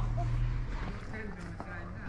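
Faint talking over a low hum that fades out about half a second in.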